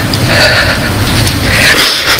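A woman crying close to a microphone: two long, breathy, shaky sobbing breaths, one starting about a third of a second in and one near the end.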